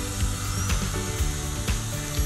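Background music, with the faint high whine of an air-driven high-speed dental handpiece turning a diamond bur during a crown preparation on a molar.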